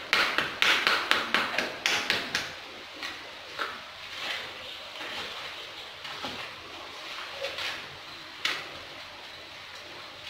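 A small hand tool scraping and scooping soil in a shallow tray, with a quick run of scrapes and knocks over the first two seconds or so, then scattered softer scrapes and one sharp knock later on.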